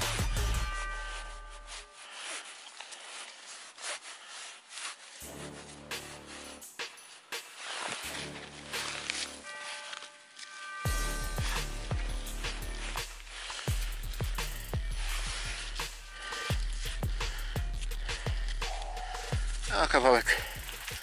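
A hand digger scraping and chopping into frozen soil and dry grass, in a series of short scrapes and knocks. Twice a metal detector gives a steady tone, about a second in and again around eight seconds. Wind rumbles on the microphone near the start and through the second half.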